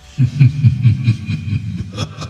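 A loud, low engine rumble in a loping rhythm of about four pulses a second, starting abruptly just after the music cuts.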